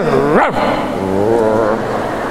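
A man's voice making a wordless grunt through a hand microphone, imitating a child's unintelligible grunted answer: a short rising sound, then a longer low drawn-out grunt.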